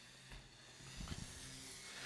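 Quiet room tone with faint hiss and a few faint, soft low blips.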